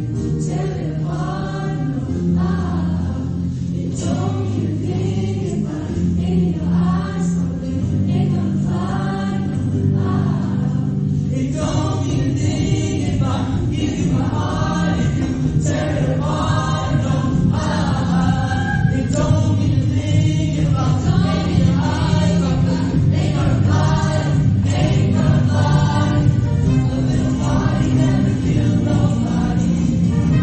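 Mixed show choir singing in parts over instrumental accompaniment with sustained bass notes. About eleven seconds in the arrangement fills out and grows slightly louder.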